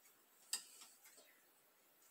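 A wooden rod used as a pestle knocking against the inside of a glass jar while herbs are pressed down in liquid: one sharp click about half a second in, then a few faint ticks, otherwise near silence.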